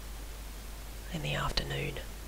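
A voice speaking quietly and indistinctly for under a second, starting about a second in, with two sharp clicks close together in the middle of it, over a steady low hum.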